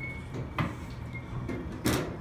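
Mechanical clunks from a coin-operated toy-ball vending game as its coin crank and steering wheel are worked: a soft knock about half a second in, then a sharp, louder click near the end.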